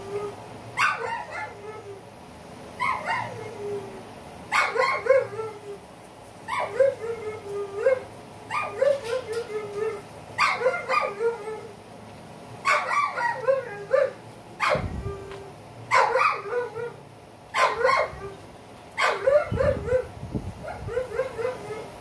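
Dogs barking in short, repeated bouts, one about every two seconds.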